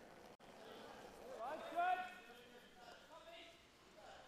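A curler's shout on the ice, a short cry that rises in pitch and peaks about two seconds in, followed by a fainter call near the end.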